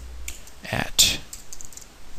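Computer keyboard typing: a few scattered keystrokes, with a louder burst of sound about a second in.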